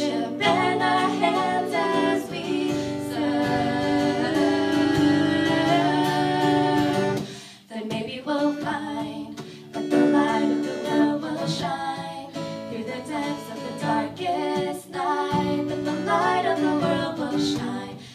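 Live acoustic guitar strummed and picked under female vocals singing held, melodic lines, with a short break in the music a little before halfway.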